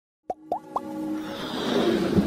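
Sound of an animated intro: three quick upward-gliding pops, then a swell of music that builds toward the end.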